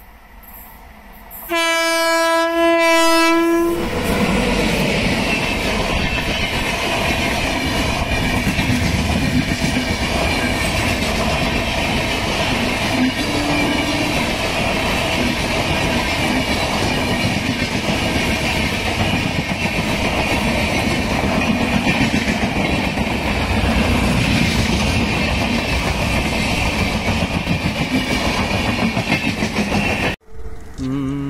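Indian Railways electric locomotive sounding one horn blast of about two seconds, a single steady note, as it approaches. The passenger train then runs close past at speed, a continuous rumble of the coaches with the wheels clattering on the rails.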